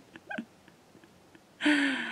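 A woman laughing into her hand: a few short, squeaky, muffled giggles, then near the end a longer voiced groan that falls slightly in pitch and fades.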